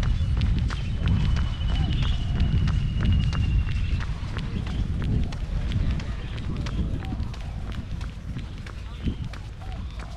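Running footsteps in a steady rhythm, about three a second, over wind rumbling on the microphone of a camera carried by the runner. A thin high trill runs for about three seconds near the start.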